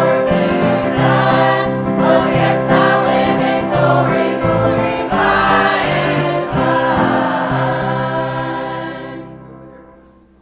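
Church choir singing a hymn together, closing on a held final chord that fades away near the end.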